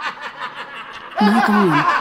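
Men laughing hard in quick, repeated bursts, with one louder drawn-out laugh about a second in.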